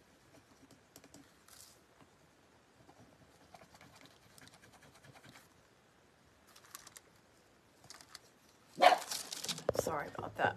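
Faint, intermittent scratching as a rub-on transfer is burnished onto a cylindrical craft piece. About nine seconds in comes a sudden loud rustling knock as the recording phone is handled.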